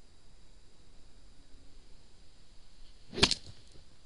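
A golf club striking the ball off the turf on a full swing: one sharp crack a little over three seconds in.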